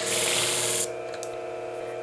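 Steel shear blade grinding against the spinning plate of a flat-hone sharpening machine: a hiss that cuts off suddenly just under a second in, as the blade is lifted away. The machine's motor keeps running with a steady hum.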